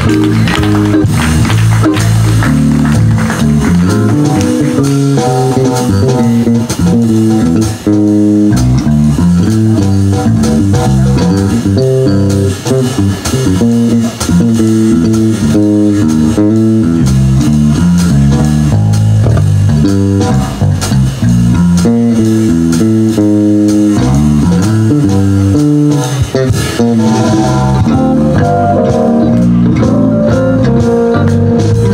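Live jazz band playing, with an electric bass guitar carrying a busy line of plucked notes to the fore, drums and guitar behind it.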